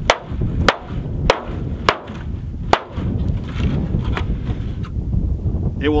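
Hammer striking a clear Tuftex corrugated polycarbonate greenhouse panel hard, five sharp blows about two-thirds of a second apart, a test of how it stands up to hail; the panel does not break.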